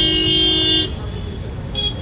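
Vehicle horn: one long, steady honk that stops about a second in, then a brief second toot near the end, over low road traffic noise.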